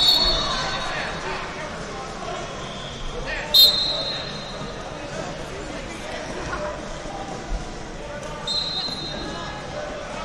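Referee whistles in a busy wrestling hall: a sharp whistle blast about three and a half seconds in and a shorter one near the end, over a steady background of crowd voices and hall noise.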